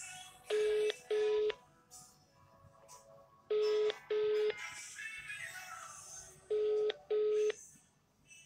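Telephone ringback tone in a double-ring cadence: two short steady tones a moment apart, the pair repeating every three seconds, three times. It is the sound of a call ringing at the other end, not yet answered.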